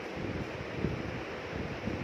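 Steady rushing noise like air on the microphone, with a few soft low knocks.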